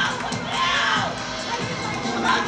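Crowd of spectators shouting and cheering at an indoor track relay race, many voices calling out at once.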